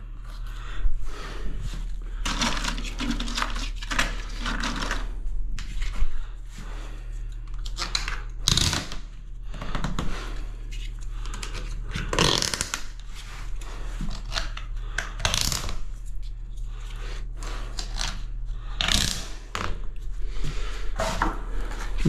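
Plastic tile-levelling clips and wedges being handled and pushed into place between wall tiles: a run of irregular clicks, scrapes and rubbing strokes, over a steady low hum.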